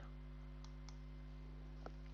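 A few faint computer mouse clicks, selecting the crop tool from a menu, over a steady low hum.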